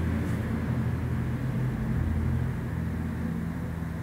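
Soft ambient background music: a steady low drone of sustained tones that shifts about two seconds in.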